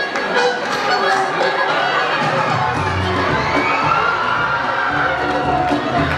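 Audience cheering and shouting over music, many voices at once. A bass beat comes in about halfway through.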